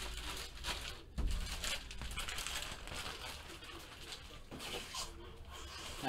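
Plastic wrapping and a yellow envelope rustled and handled on a tabletop, with a soft thump about a second in.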